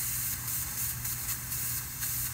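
R-22 refrigerant hissing out of a leak at the solder joint on the back of the liquid-line filter drier, swelling and easing by turns over a steady low hum. The hiss is the sign of a leaking system, already low on charge.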